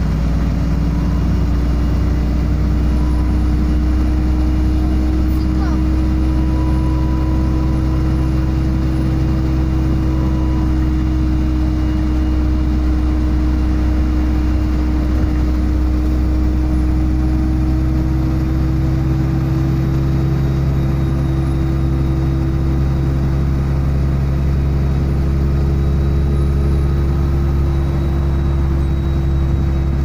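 City bus heard from inside the passenger cabin, engine and drivetrain running steadily while cruising at road speed: a constant low rumble with a steady whine that climbs slightly in pitch about two-thirds of the way through.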